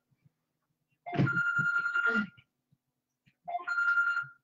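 A telephone ringtone sounding twice, each ring about a second long, with a steady high tone and a second's pause between the rings.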